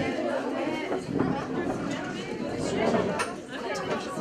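Indistinct chatter: several voices talking over one another in a room, no single voice standing out.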